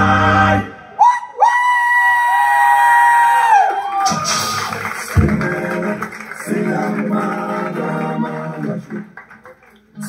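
A song with singing played back through a tube-amplified Altec horn loudspeaker system in a room. A long held high note, with a second tone beneath it, bends down in pitch at its end about four seconds in. Then the band and voice come back in, and the sound drops away just before the end.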